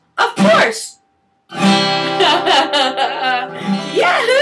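Acoustic guitar strummed to close a children's song: a short vocal phrase, a brief pause, then a full chord ringing out from about a second and a half in, with a woman's voice over it.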